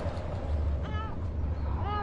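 Two short animal calls about a second apart, each rising and then falling in pitch, over a steady low rumble.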